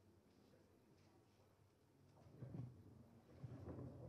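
Near silence: quiet room tone, with two faint, low-pitched sounds in the second half.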